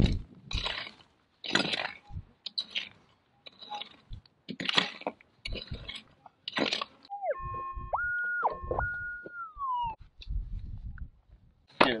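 A pick striking and scraping into hard, stony dirt about once a second, then a metal detector's electronic target tone for about three seconds, stepping up and down in pitch before sliding down and stopping.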